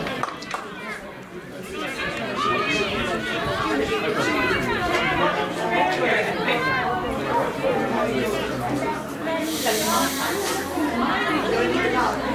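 Many overlapping voices of players and onlookers calling and chatting, with a brief burst of hiss about ten seconds in.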